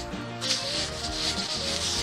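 Leather-gloved thumb rubbing dirt off a silver Barber dime held in the palm: a scratchy scuffing that starts about half a second in, over steady background music.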